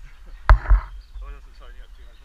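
A single sharp knock about half a second in, with a low double thump, followed by faint voices.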